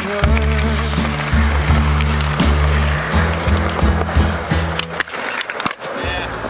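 A song with a steady bass line plays, with a skateboard rolling on concrete under it and sharp clacks from the board, several near the end.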